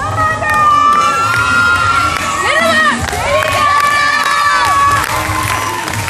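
Children shouting and cheering in long, high, held yells: two of them, with a short break about halfway through.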